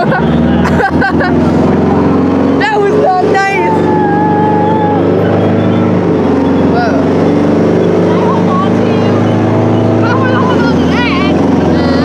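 Tank engine running steadily under way. Voices come in over it about a quarter of the way in and again near the end.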